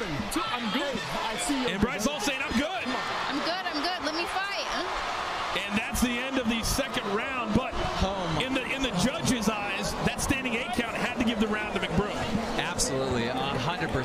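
Several people's voices talking over one another, with scattered sharp knocks throughout.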